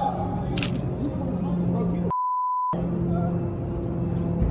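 Background music plays throughout. A little past halfway it is cut out completely for about half a second by a single steady censor bleep tone, the kind used to mask a swear word.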